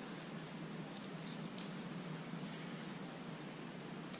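Quiet, steady room hiss with a few faint soft taps and rustles as a plastic paint cup and a wooden stir stick are picked up and handled.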